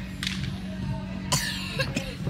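Two short coughs from a person close by, the second louder, over a steady low hum and faint voices in a large hall.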